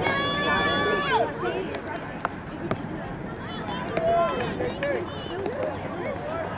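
Shouting from people at a soccer field: one high voice holds a long call for about a second, ending in a falling slide, then scattered shorter calls from further off.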